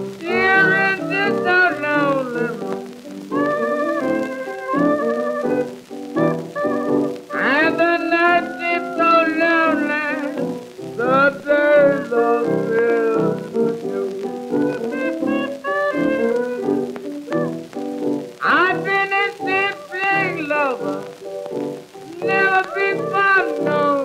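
Barrelhouse piano blues from an early-1930s recording: piano playing throughout, with a wavering, sliding voice in long phrases over it near the middle and near the end.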